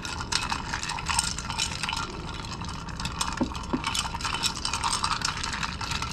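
Long bar spoon stirring ice cubes in a glass mixing beaker: a steady run of quick clinks and rattles as the ice knocks against the glass, going on without a break.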